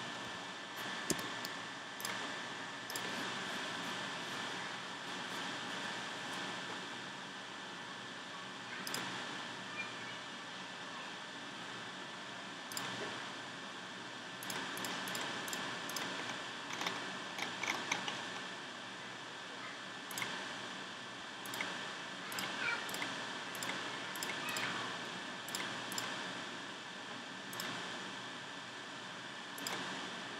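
Scattered short clicks of a computer mouse and keyboard, thicker in the second half, over a steady background hiss with a faint high whine.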